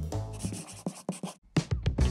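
Channel logo sting: a scratchy swish, like a brush drawing across paper, over a music bed, then a brief drop out and a few sharp clicks near the end.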